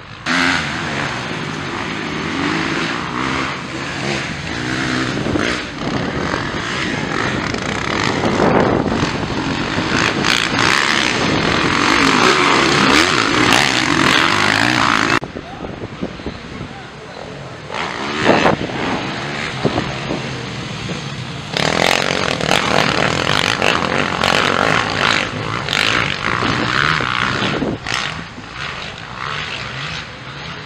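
Several motocross dirt bike engines racing past, revving up and down through the gears as they pass on the track. The sound cuts off suddenly about halfway through, then the engines come back a few seconds later.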